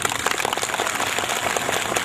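An audience applauding: a sudden burst of many hands clapping, dense and irregular.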